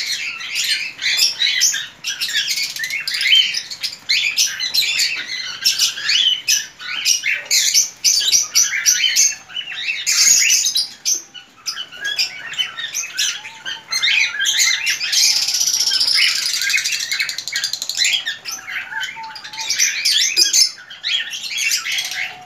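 Many small caged birds chirping and calling together in an aviary, a busy, overlapping high-pitched chatter that never lets up.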